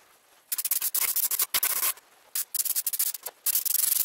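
Airbrush spraying paint onto a motorcycle helmet in about four short bursts of hiss, each half a second to a second long with brief gaps between. The hiss begins about half a second in.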